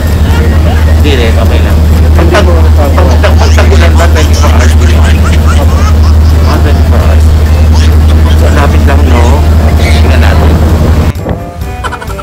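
Loud, steady low drone of a passenger boat's engine heard from inside the cabin, with voices over it. About a second before the end it gives way to music.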